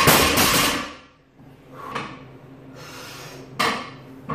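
Loaded barbell with iron plates set down on the floor, a sharp metal clang with ringing that dies away over about a second. A fainter knock follows, then a second sharp clank just before the end.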